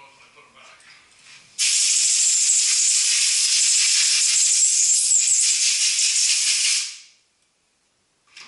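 Compressed-air blow gun blowing a steady hiss of air for about five seconds. It starts abruptly about a second and a half in and tails off near the end.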